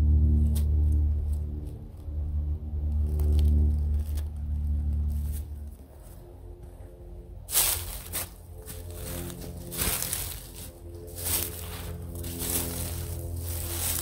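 Background music with a deep bass line. From about halfway through, footsteps crunch through dry fallen leaves at a steady walking pace over the music.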